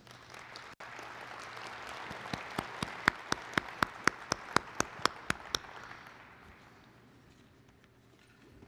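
Audience applause that swells about a second in and dies away by about six seconds in. Partway through, one person's loud, evenly spaced claps, about four a second, stand out above it.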